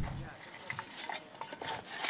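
A shovel scraping and digging in soil, heard as a few faint, scattered scrapes.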